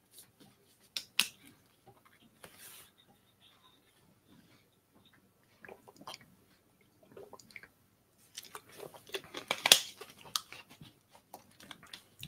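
A plastic water bottle being handled and drunk from: scattered clicks and crinkles of the plastic, with quiet gulping in the middle. A denser run of crackling plastic near the end is the loudest part.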